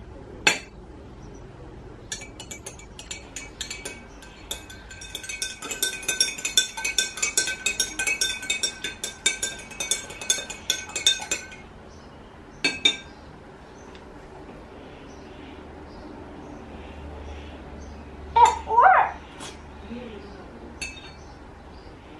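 Metal teaspoon stirring egg yolk into oil and water in a glass tumbler, clinking rapidly against the glass for about nine seconds while the glass rings. A single clink comes about half a second in and another near 13 seconds, and a short squeak comes near the end.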